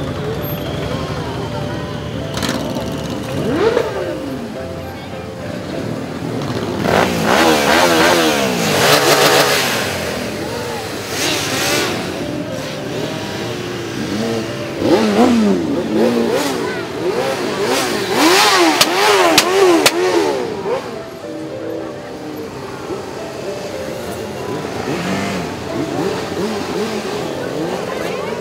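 Many motorcycles riding past at low speed, their engines running with repeated throttle blips that swing up and down in pitch. The loudest bursts of revving come about a quarter and again about two-thirds of the way through, with quick rev after rev near the latter.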